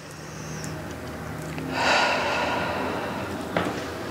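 A woman breathing deeply through a held stretch: a slow breath that grows louder, then a stronger exhale about two seconds in.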